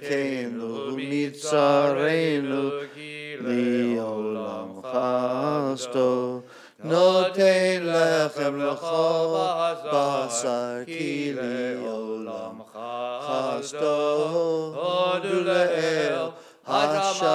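A man chanting Hebrew liturgy unaccompanied, in long, bending sung phrases with short pauses for breath.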